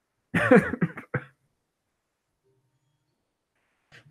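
A man laughing: a short burst of a few quick pulses lasting about a second, near the start.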